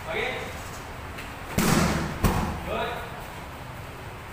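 Two hard strikes, a double right knee, landing on Muay Thai pads in quick succession, the two smacks about two-thirds of a second apart.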